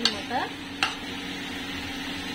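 Steel spoon stirring boiled potatoes and green peas in a kadhai, clicking sharply against the pan twice, over a low steady sizzle of the food frying.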